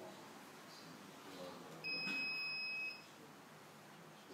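A single steady, high-pitched electronic beep lasting about a second, starting about two seconds in, over faint room tone.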